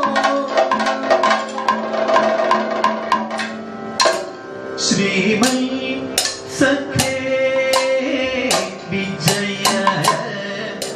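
Kathakali padam music: a male vocalist singing long, gliding melodic lines over frequent drum strokes from a chenda and maddalam and sharp metallic strikes of hand-held cymbals.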